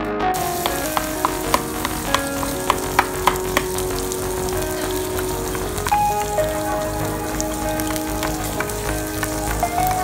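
Pork and okonomiyaki batter sizzling on a hot iron teppan griddle, a steady hiss with a run of sharp clicks in the first few seconds. Soft background music with held notes runs underneath.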